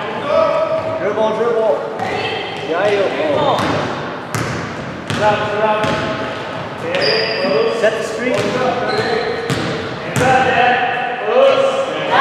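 A basketball bouncing on a hardwood gym floor, a series of irregular sharp bounces during play, with players' voices calling out. It all echoes in the large gym.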